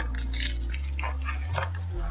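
Paper wrapping on a bundle of makeup brushes rustling and crinkling in the hands, a few short soft scrunches, over low steady bass notes.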